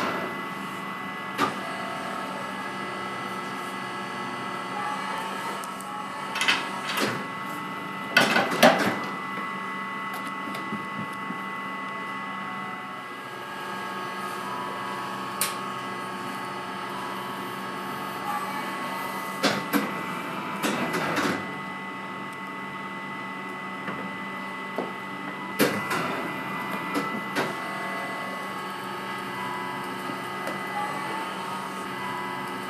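Baumkuchen oven machinery running: a steady mechanical whir with a constant high whine, broken by scattered sharp metal clanks and knocks, the loudest clusters about a third of the way in and again about two thirds of the way in.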